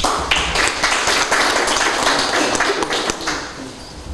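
Audience applauding, dense clapping that starts at once and fades out near the end.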